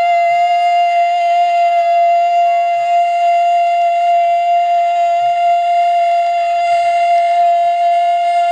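A male kirtan singer holding one long, steady high note, with faint accompaniment beneath it.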